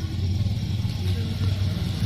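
A steady low engine hum.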